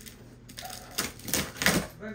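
A cardboard parcel box being cut and torn open: packing tape and cardboard flaps scraping and ripping in a few loud, sharp rasps, starting about a second in, with the loudest near the end.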